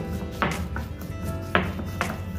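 Stone pestle pounding in a stone mortar, two knocks about a second apart, crushing a paste, over background music.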